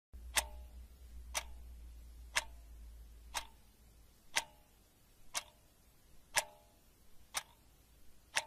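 Clock-tick sound effect marking a countdown timer: sharp single ticks, one each second, eight in all.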